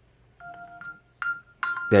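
A Samsung Galaxy S25 Ultra ringing on a remote Samsung Find command, its locate-alert sound playing as three short runs of electronic tones that begin about half a second in.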